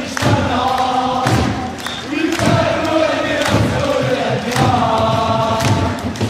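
A large crowd of football supporters chanting a song in unison, in repeated phrases of one to two seconds, with sharp thuds on the beat.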